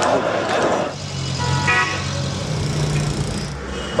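Crowd noise, then from about a second in, city street traffic: engines running and a car horn giving a brief burst of short toots.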